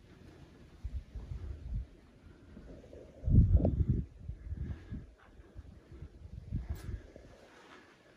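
Irregular low rumbling thuds from movement at a handheld camera's microphone, the loudest lasting under a second about three seconds in, with smaller ones before and after.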